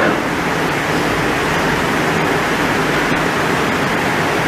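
Steady rushing background noise with a faint low hum: the room's background noise picked up by the lecturer's microphone during a pause in speech.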